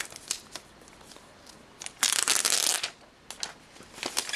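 Protective plastic wrap being pulled off a new iPad: a few light clicks, then a loud rustle of plastic lasting just under a second, about halfway through.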